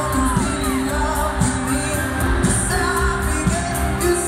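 A live pop band with drums, guitars and keyboards playing while the lead singer sings, heard from the arena stands.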